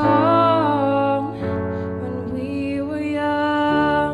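A woman singing long held notes into a microphone, live, over a steady accompaniment whose low chord changes about a second and a half in and again near the end.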